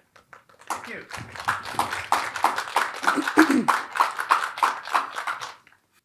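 Audience applauding, starting about a second in and dying away just before the end, with a voice briefly heard among the clapping.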